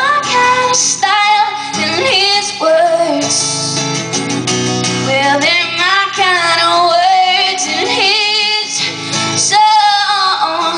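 A woman singing a song live, holding notes with vibrato, to her own strummed acoustic guitar.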